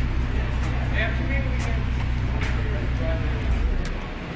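The Golf GTI W12's 6.0-litre twin-turbo W12 engine, taken from the Bentley Continental GT, idling with a steady low rumble and no revs.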